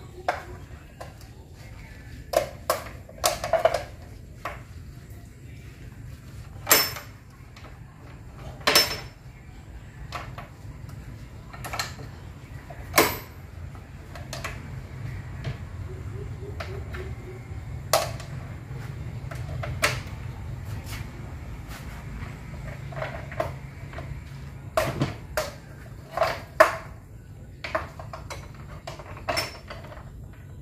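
Metal speaker-cabinet rigging brackets and fittings clanking and clicking as they are handled and fitted together: irregular sharp metal knocks, a few of them louder, over a steady low rumble.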